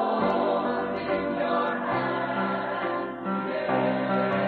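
A church choir singing in sustained chords, which change about halfway through and again near the end.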